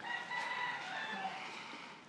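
A rooster crowing once: a single drawn-out call of about a second and a half that drops in pitch at its end.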